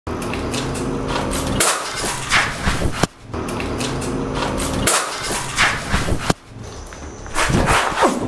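Knocks and a clattering rattle, with a low steady hum between them, the same few seconds of sound heard twice over and starting a third time near the end.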